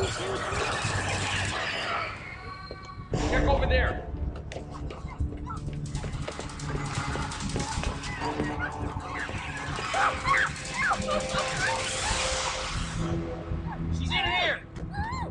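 Several overlapping voices with no clear words, over background music, with a louder burst about three seconds in.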